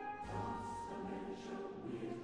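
Four-part mixed chorus singing very softly with orchestral accompaniment, a late-Romantic choral cantata passage.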